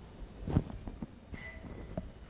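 Quiet room noise with one sharp knock about half a second in, followed by a few fainter clicks.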